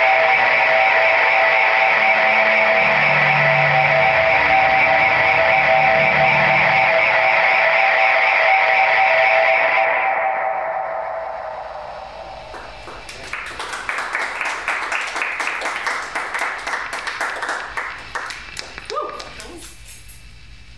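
Electric guitar through distortion and delay pedals: a loud, sustained wall of held, droning notes that fades away about ten seconds in. After it comes quieter, rapid scratchy strumming with pick clicks.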